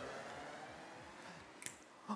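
Quiet room tone that fades slightly, with a single short faint click about a second and a half in.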